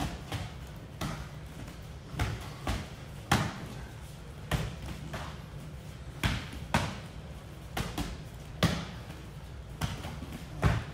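Gloved punches and kicks landing on boxing gloves and shin guards as two fighters trade jab-cross-hook and kick combinations, the strikes caught or blocked. The smacks come irregularly, about one or two a second.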